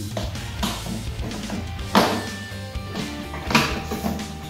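Background music over a few plastic clunks as a lawn mower's side-discharge chute is set onto the deck. The loudest knock comes about two seconds in, another near the end.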